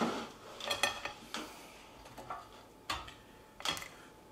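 A few light clinks and knocks, with short pauses between them, as toasted baguette slices are lifted off a metal tray and set down on a ceramic plate.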